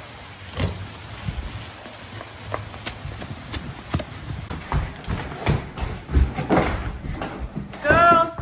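Footsteps on wet pavement: a run of short steps, about one every half second.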